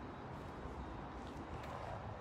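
Quiet outdoor background noise: a faint, steady low rumble with no distinct event.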